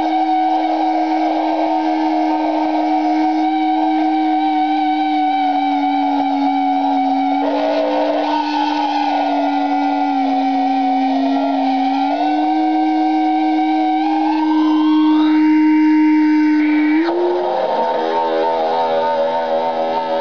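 Electronic drone from a ring-modulated electric guitar rig with self-fed (output looped back to input) mixer and effects: one sustained tone with a stack of clanging upper tones, wavering slightly in pitch. About three-quarters of the way through, the upper tones glide upward, and shortly after, the sound changes to a denser cluster of steady tones.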